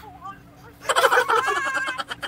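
A high-pitched, drawn-out "waaaa" wail from a person, loud and wavering, starting about a second in amid laughter.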